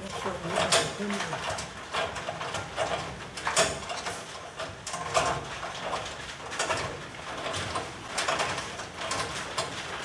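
Scattered sharp metal clicks and clinks, one or two a second, as bumper bolts are started by hand into the chrome rear bumper's mounting brackets.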